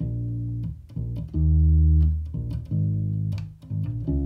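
Ernie Ball Music Man Sterling electric bass played solo: a riff of about six held single notes, the longest and loudest near the middle. It is the song's main riff, built on the notes B, E, A and D.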